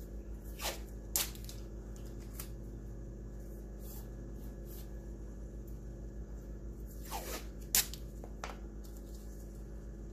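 Painter's tape being torn and pressed onto a plastic stencil: a few brief crackles and rustles, the loudest near the end, over a steady low hum.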